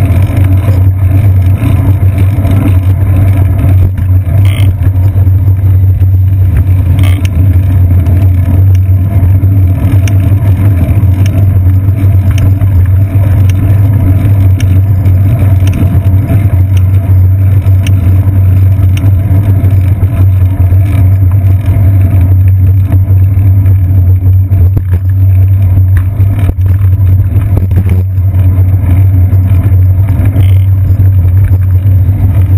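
Loud, steady low rumble of wind and road vibration on a bicycle seat-post-mounted GoPro Hero 2 action camera while riding through city traffic, with a few brief clicks from bumps.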